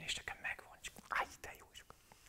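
A man's faint breathy voice sounds and small mouth clicks between words, with one short breathy burst about a second in.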